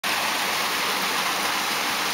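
Shallow stream water running over rocks: a steady, unbroken rush.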